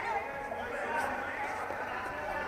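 Indistinct chatter of several voices echoing in a large indoor hall, with a faint click about a second in.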